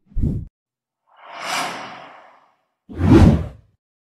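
Whoosh sound effects of an animated logo intro: a short low thump at the start, a soft airy whoosh around a second and a half in, then a louder whoosh with a deep boom near the end.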